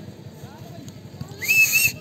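A referee's whistle blown once, a short, shrill, slightly warbling blast about one and a half seconds in, with faint voices of players in the background.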